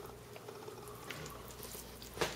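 Faint, soft wet sounds of raw ground-turkey patties being set into the watery rice and vegetables in a slow cooker, over quiet room tone.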